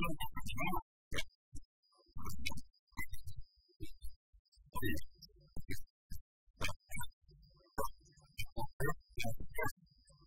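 A man's voice talking in quick, choppy bursts separated by short silent gaps.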